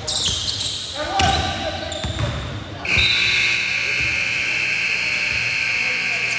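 A basketball bouncing on a gym floor amid players' voices, then about three seconds in a gym scoreboard buzzer starts one long, steady tone that is still going at the end.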